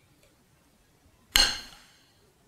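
A metal spoon clinks once against a ceramic soup bowl a little after a second in, a single bright ring that dies away within about half a second.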